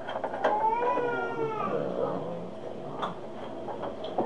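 A house cat meowing once, a call of about a second that rises and falls in pitch. A few sharp clicks come near the start and again about three seconds in.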